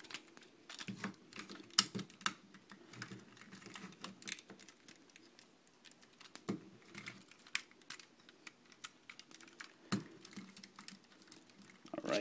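Hard plastic parts of a vintage G1 Weirdwolf Transformers figure clicking and knocking as it is transformed by hand from wolf to robot mode. The clicks are faint and irregular, the sharpest one about two seconds in.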